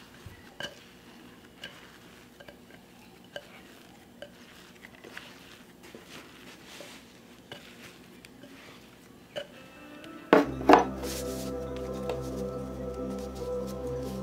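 Faint scattered taps and clinks of a ceramic bowl being tipped and scraped as proofed sourdough dough is worked out of it onto a wooden table. About ten seconds in there are a couple of sharp knocks, then background music starts and carries on.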